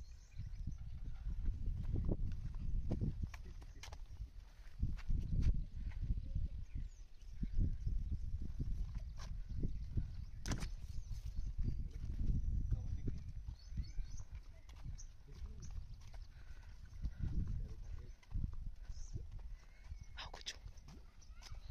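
Wind buffeting a phone microphone: a low rumble that rises and falls in gusts, with a few sharp clicks.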